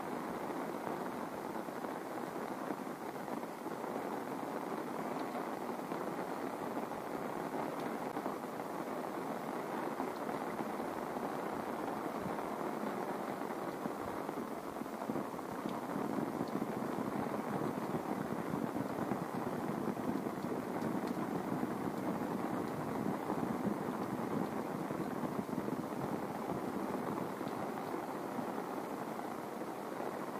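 Heavy rain falling steadily, growing a little heavier about halfway through.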